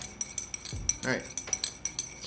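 Metal teaspoon stirring sugar into tea in a ceramic mug, with quick, repeated light clinks against the mug's sides.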